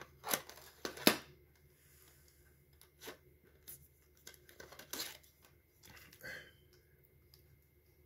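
Plastic cassette cases being handled and picked up: a few sharp clicks and clacks with quiet between, the loudest about a second in.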